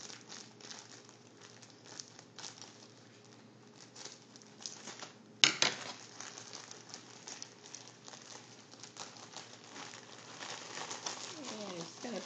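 Green shredded paper filler rustling and crinkling as it is pulled apart and handled, with one sharp knock about five seconds in.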